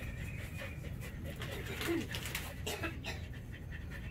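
A dog panting, with a short falling whine about two seconds in.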